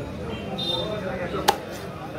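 A single heavy cleaver chop through chicken onto a wooden chopping block, sharp and loud, about one and a half seconds in.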